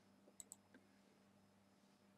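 Faint computer mouse button clicks: two sharp clicks close together about half a second in, then a fainter tick, as the 'Add' button is clicked to open a drop-down menu.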